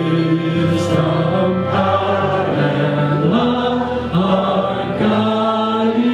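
Live worship band playing a slow song: voices singing long held notes that step up and down in pitch, over violin and guitar.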